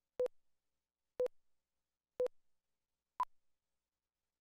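Four short electronic beeps, one a second: three at one pitch, then a fourth an octave higher. This is a segment-slate countdown cueing the start of the next programme segment.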